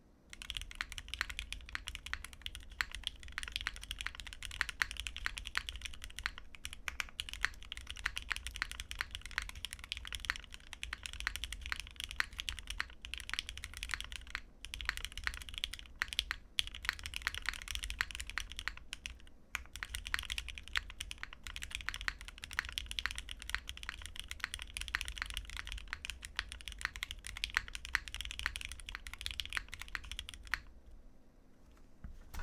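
Fast, continuous typing on a custom 60% mechanical keyboard with lubed and filmed Gateron Ink Black V2 linear switches, a full POM plate and GMK white-on-black keycaps. It is a dense run of key clacks with a few brief pauses.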